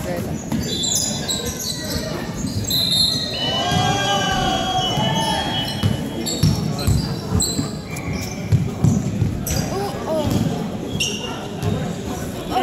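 A basketball bouncing on a hardwood indoor court during live play, repeated thumps echoing in a large hall, with players' voices calling out.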